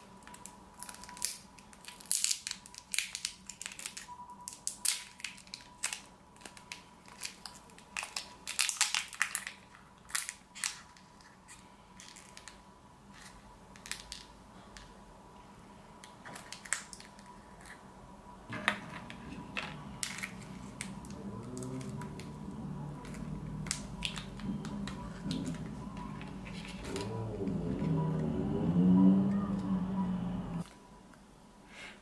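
Foil wrapper of a modelling-clay packet crinkling and crackling in quick irregular bursts as it is opened by hand, busiest in the first half. From a little past the middle a low rumble with wavering pitch builds up, loudest just before the end.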